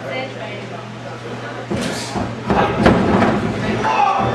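Wrestlers' bodies hitting the ring canvas during a takedown: a few thuds from about halfway through, the loudest near the end, amid shouting and chatter from the crowd.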